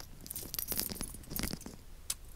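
A few light clicks and clinks at irregular intervals, faint against a low background.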